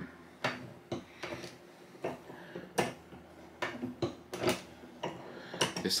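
Multi-die reloading press being worked to load 9mm cast-bullet rounds: a series of irregular metallic clicks and knocks.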